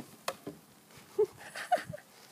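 Snow shovel handled by two Bernese Mountain Dogs tugging on it in deep snow: a sharp knock from the shovel early on, scuffling, and a few short squeaky sounds in the second half, the last ones falling in pitch.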